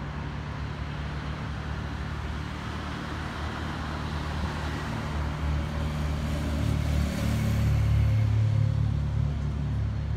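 Street traffic with a car driving past close by, its engine and tyres growing louder to a peak about eight seconds in.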